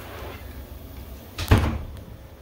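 A single loud thump about a second and a half in, with heavy low end, dying away over a few tenths of a second.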